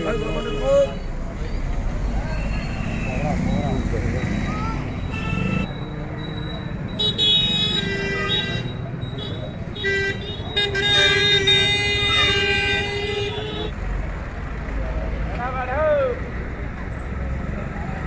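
Road traffic with a vehicle horn sounding several steady blasts in the middle, the last held for about three seconds, over a low engine rumble and scattered voices.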